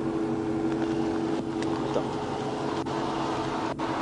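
An idling vehicle engine, a steady hum with a faint held tone over it, broken by a few faint clicks.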